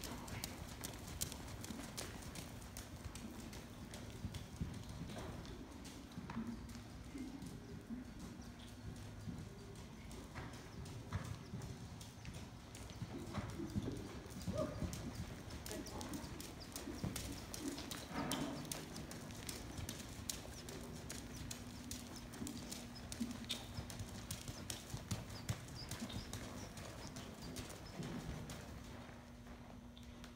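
Hoofbeats of a ridden horse trotting on the sand footing of an indoor arena.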